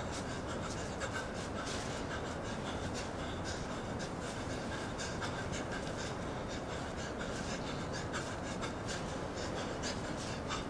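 A solo dancer's breathing and the small scuffs and taps of his movements: many short, irregular clicks over a steady hiss.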